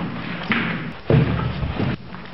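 A dull thump about a second in, followed by a low rumble lasting most of a second.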